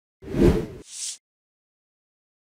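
Whoosh transition sound effect: a short, heavy swoosh with a deep low end, trailing into a brief high hiss, about a second in all.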